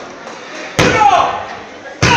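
Referee's hand slapping the ring mat in a pin count: two sharp slaps a little over a second apart, each followed by a falling shout.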